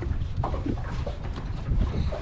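Wind buffeting the microphone, a low uneven rumble, with a brief faint sound about half a second in.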